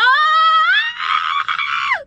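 A woman's long, high-pitched excited squeal, an emotional reaction to a song. It glides up in pitch over the first second, is held, then drops off near the end.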